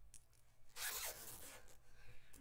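A brief rustling scrape close to the microphone, lasting about a second, with a couple of faint clicks just before it.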